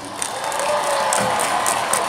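Large arena concert crowd cheering and clapping, a dense steady mass of claps and shouts with music faint underneath.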